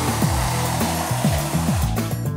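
Background music with a steady bassline, over a steady hiss of a hand rubbing across static-cling window film on glass as it is smoothed flat.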